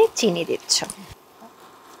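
Brief voice sounds from a woman during the first second, then a quieter stretch of low kitchen background noise.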